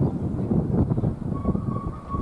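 Wind buffeting an outdoor microphone, a fluttering low rumble, with a thin steady tone in the second half.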